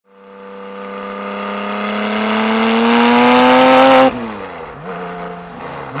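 A 2002 Porsche 911 Turbo's 3.6-litre twin-turbo flat-six, breathing through an FVD Brombacher exhaust, pulls hard with a steadily rising, growing engine note for about four seconds. It then lifts off suddenly, and the revs fall away through a manual gear change before picking up again sharply near the end.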